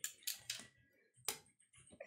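Metal kitchen tongs clicking: a few separate sharp clicks, the loudest just over a second in.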